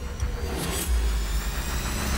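A deep, swelling rumble with a faint rising whoosh, a cinematic transition effect in a TV show's intro, mixed with music. The rumble grows louder about a second in.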